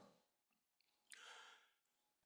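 Near silence, with one faint, short breath from a man about a second in.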